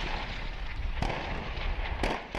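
Battery of towed artillery guns firing: continuous blast noise and echo, with a sharp report about a second in.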